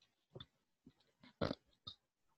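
A few faint, brief noises in a quiet room, the loudest about a second and a half in and another just before the end.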